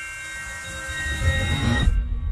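Cinematic trailer sound design: a hissing swell over several held high tones, with a deep rumble building from about halfway. The hiss and tones cut off suddenly just before the end, leaving the low rumble.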